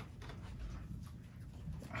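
Pause in speech: faint room tone with a low rumble.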